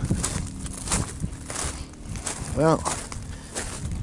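Wind buffeting the microphone outdoors, an uneven rumbling rush with irregular small clicks and crackles, over a faint steady low hum.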